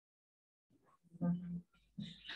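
Near silence, then about a second in a single short utterance from one person's voice, over the call audio.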